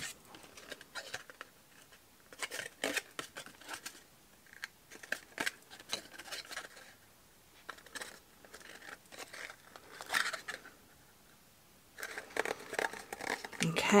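Red cardstock being folded and pressed together by hand into a small box: irregular rustles, scrapes and light taps of card against card and the work mat.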